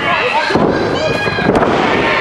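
Ringside crowd shouting at a wrestling match, with one high-pitched yell about a second in. A wrestler's body slams onto the ring mat with a sharp thud near the end.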